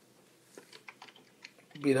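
Faint typing on a computer keyboard: about half a dozen quick, irregular keystrokes over roughly a second. A man's voice starts speaking near the end.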